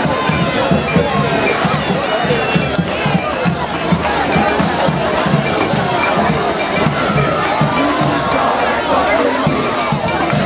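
Brass band playing amid a dense, noisy street crowd, with horns wavering over a steady low beat and people shouting and cheering around it.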